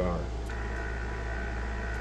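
Steady low electrical hum, joined about half a second in by a steady high-pitched whine.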